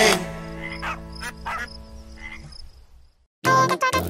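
A song's closing chord fades out while a few short cartoon frog croaks sound over it. After a brief silence, bouncy children's music starts near the end.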